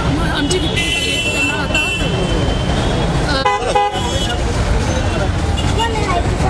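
Vehicle horns honking in street traffic, with a short horn blare about three and a half seconds in, over a crowd's chatter and a low traffic rumble.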